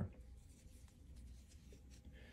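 Faint soft scratching and rubbing of a metal crochet hook drawing cotton yarn through the stitches, over a low steady room hum.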